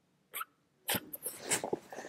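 A young girl giggling: a quick breath, then, from about a second in, a run of short breathy bursts of laughter.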